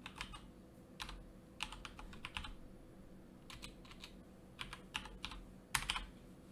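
Keystrokes on a computer keyboard, typed in short irregular bursts of a few keys at a time as a short name is keyed in.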